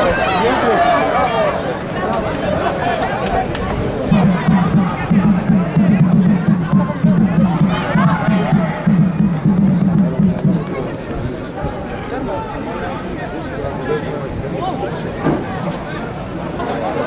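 Players and a few spectators shouting and calling across an open football pitch. From about four seconds in to about ten seconds, a low, rapid pulsing sound runs under the voices.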